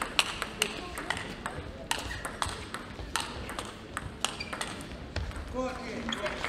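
Table tennis ball being struck back and forth in a rally: quick, sharp clicks of the ball off the rackets and table, several a second, thinning out in the second half as the point ends.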